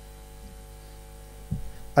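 Steady electrical mains hum from a microphone and sound system, with a brief low sound about one and a half seconds in.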